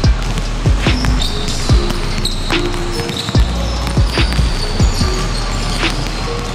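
Basketball bouncing on a wooden gym floor as it is dribbled, a sharp bounce roughly every second, over background music.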